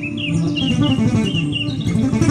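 Acoustic guitar being fingerpicked in a slow improvisation, with a bird's short chirps repeating over it about three times a second.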